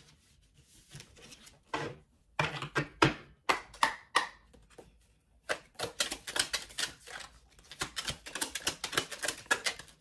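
A tarot deck being shuffled by hand: quick runs of clicks and flutters as the card edges strike one another. The clicks come in short groups at first and grow into a dense, fast run in the second half.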